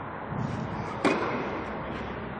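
A tennis ball struck once by a racket about a second in, a sharp crack with a short echo under the court's roof.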